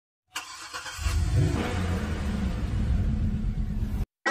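A car engine starting and revving: a sharp start, a brief rise in pitch about a second in, then a loud, steady low rumble that cuts off abruptly.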